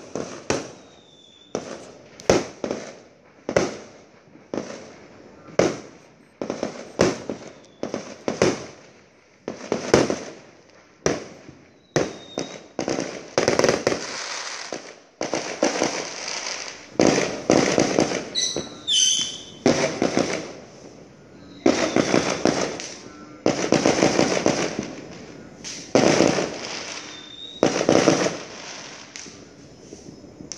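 Fireworks going off: a long run of bangs, roughly one a second, each trailing off in a rolling echo, with a few short whistles and a stretch of crackling in the middle.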